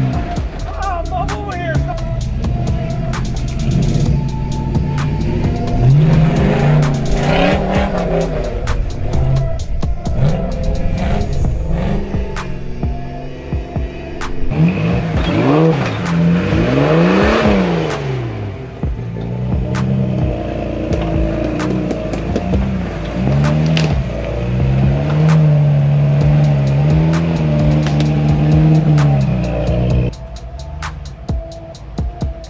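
Off-road rigs' engines revving up and down in bursts as they crawl over rock ledges and boulders, with the strongest rev rising and falling about two-thirds of the way through.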